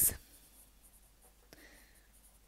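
Pencil writing on lined notebook paper: faint scratching strokes of the lead across the page.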